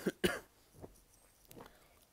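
A man clears his throat with a short cough near the start, followed by a couple of much fainter, brief sounds.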